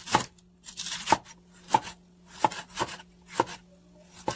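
Kitchen knife slicing a sweet onion on a wooden cutting board: about six strokes, each a short swish through the onion ending in a sharp knock of the blade on the board.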